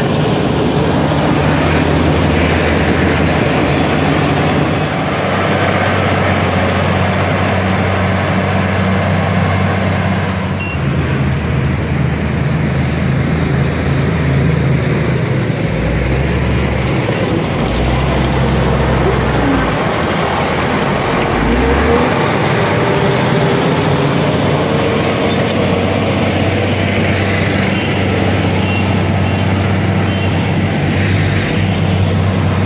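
Diesel engine of a Kobelco SK380 hydraulic excavator running, a deep steady drone that shifts in pitch a few times.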